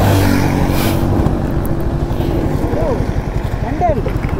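Motorcycle engine idling at a standstill, a steady low pulse, with another vehicle's hum and hiss passing in the first second.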